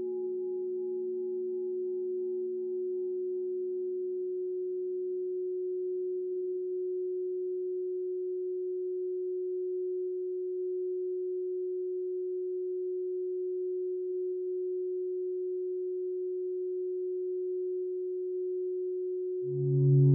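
A steady, pure electronic hum at one mid pitch, held unchanged. Softer lower and higher tones under it fade away over the first few seconds, and a louder, deeper tone comes in near the end.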